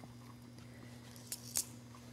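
Quiet room tone with a steady low electrical hum, and two faint ticks about a second and a half in.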